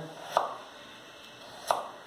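Kitchen knife dicing peeled raw potato into cubes on a wooden cutting board: two chops a little over a second apart, the blade knocking through onto the wood.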